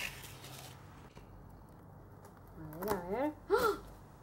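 Scissors slitting the packing tape on a cardboard box: a short scraping rustle in the first second. A woman's voice is heard briefly near the end.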